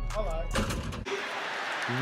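Background music with a brief shout over it, a sharp knock about half a second in, then an abrupt cut about a second in to the steady roar of a comedy-show audience from an inserted stand-up clip.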